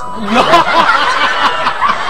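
Several people laughing and chuckling together, their voices overlapping.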